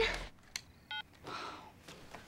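A short electronic phone beep about a second in, preceded by a click, as a mobile call cuts off; the end of a woman's shout fades out just before it.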